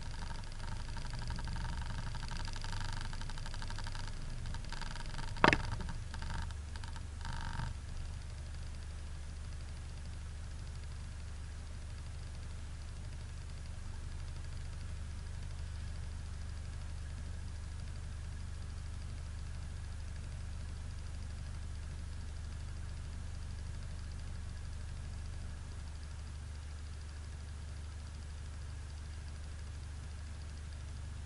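Off-road 4x4's engine idling with a steady low hum, heard from inside the cabin. Over the first eight seconds there is some light rattling, with one sharp knock about five and a half seconds in.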